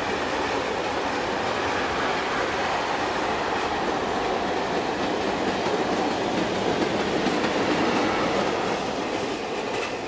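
A freight train's open wagons rolling past on the track, a steady noise of wheels on rail that eases slightly near the end as the rear of the train goes by.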